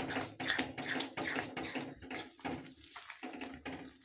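A metal spoon stirring and scraping thick, creamy curry in a metal kadai, with wet, sloshing strokes about three times a second that grow quieter in the second half. The cream has just gone in and is being stirred continuously so it does not split before it comes to a boil.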